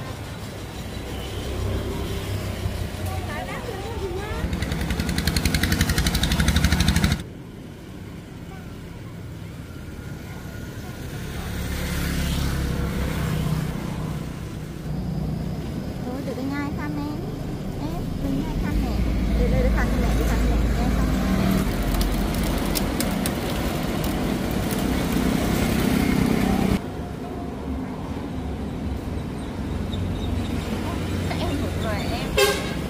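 Road traffic going by, vehicles passing in loud swells with a low rumble, and people's voices now and then. The sound drops off abruptly about seven seconds in and again near the end.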